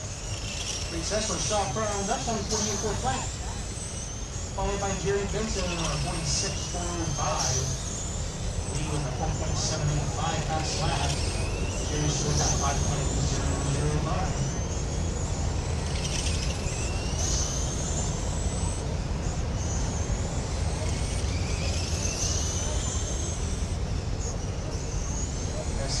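Radio-controlled oval race cars lapping the track, their motors whining and rising in pitch again and again as they accelerate out of the turns, over a steady low rumble.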